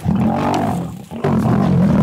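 Lions snarling and roaring aggressively in two loud, rough bursts of about a second each, with a short break between.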